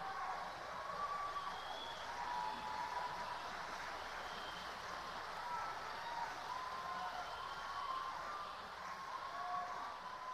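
Faint theatre audience applause with scattered cheers and whoops after the song ends, dying away near the end.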